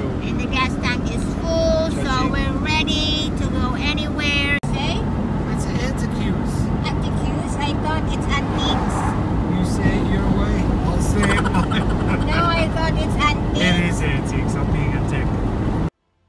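Steady engine and road noise inside a moving car's cabin, with voices talking over it. The noise drops out for an instant about four and a half seconds in.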